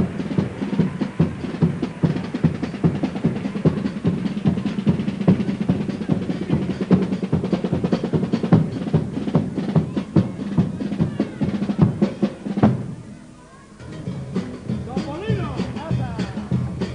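Carnival chirigota ensemble playing an instrumental passage: snare drum and bass drum keep a fast, dense beat over guitars. The playing cuts off abruptly near the end, then softer playing returns.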